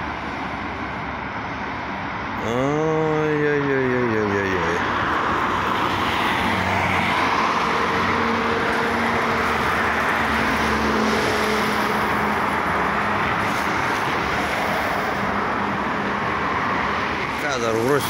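Road traffic on a town street: cars and a light truck passing, with steady tyre and engine noise that swells in the middle. A short pitched sound rises and falls a couple of seconds in.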